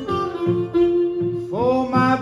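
Acoustic blues on resonator guitar and harmonica: the guitar keeps a plucked rhythm while the harmonica holds a note for about a second, then comes in with a note bent upward near the end.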